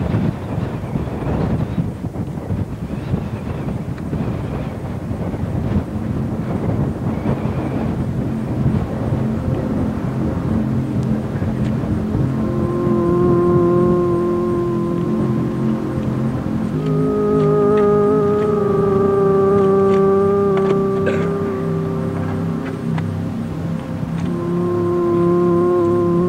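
Background music: a dense, noisy texture at first, joined about halfway through by long held chords that change every few seconds.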